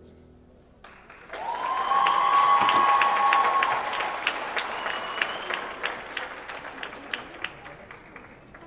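Audience applause breaks out about a second in at the end of a dance routine's piano music, with a long held cheer rising above the clapping. The clapping is loudest for the next couple of seconds and then thins out toward the end.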